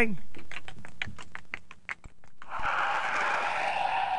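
Quick footsteps, about six a second, growing fainter as someone hurries away. A bit past halfway a steady hiss with a faint held tone sets in.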